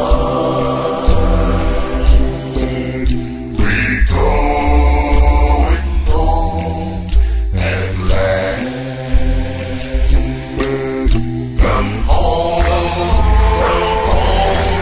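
A cappella gospel singing: several voices in harmony over a low bass part, with no instruments. The hymn is sung in sustained phrases with short breaks between them.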